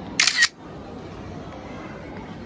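Camera shutter sound, most likely a smartphone's: one short, loud snap just after the start, lasting about a third of a second.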